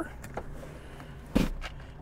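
Rear split seatback of a 2018 Buick Encore released by its strap and folding forward: a couple of faint clicks, then a single thump as it lands flat about one and a half seconds in.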